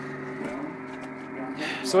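Receiver audio from an SDRplay RSP2 run by CubicSDR on a Raspberry Pi 3, tuned to a harmonic of a local AM broadcast station in upper sideband: a steady drone of several low tones. A man's voice starts near the end.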